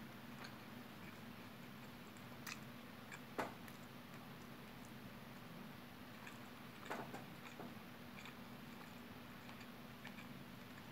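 Quiet eating sounds of a person eating rice by hand: chewing and mouth noises with a few short sharp smacks or clicks, the loudest about three and a half seconds in, over a low steady hum.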